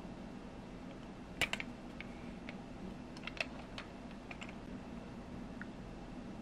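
Light clicks and taps of a small white plastic toy seesaw and its parts being handled in the fingers. A quick cluster of clicks comes about a second and a half in, then scattered single taps around the middle.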